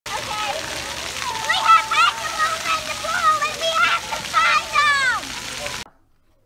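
Splash-pad fountain jets spraying water in a steady hiss, with children's high voices calling and squealing over it, one call falling in pitch near the end; the sound cuts off abruptly just before the end.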